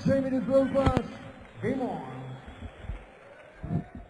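A darts referee's call over the arena PA: one long drawn-out call in the first second, then a shorter call, giving way to low background noise of the hall.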